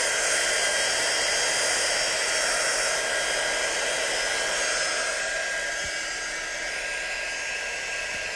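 Handheld embossing heat tool running: a steady blowing rush with a thin motor whine, drying water-wet ink on paper. It eases slightly in the second half.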